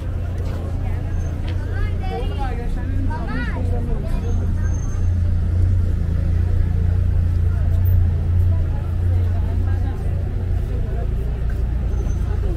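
Busy street ambience: passers-by talking over a steady low rumble of traffic, with one nearby voice standing out about two to four seconds in.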